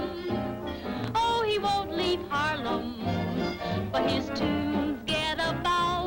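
Swing band music from a late-1930s film soundtrack, with a voice singing over it in short phrases that slide up and down in pitch.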